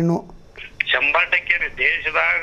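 Speech only: a man's voice stops just after the start, and after a short pause a second voice speaks over a telephone line, sounding thin and narrow.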